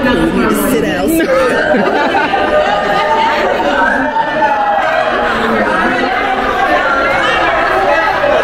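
Many people talking at once: steady, overlapping crowd chatter with no single voice standing out.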